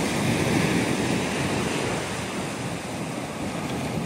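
Ocean surf washing on the beach, a steady rushing noise, with wind buffeting the microphone.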